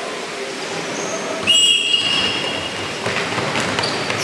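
A referee's whistle sounds one long blast of about a second, starting about a second and a half in, signalling the start of a dodgeball rally. Quick footsteps on the court follow near the end as players rush forward.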